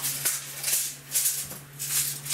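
Steel tape measure being reeled back into its case, a dry rattling whir in several short spurts, over a steady low hum.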